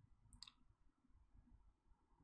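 Near silence: room tone with one faint, short click about half a second in.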